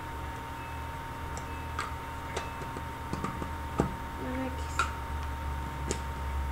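Scattered light clicks and taps of small objects being handled, about six at uneven intervals, over a steady electrical hum.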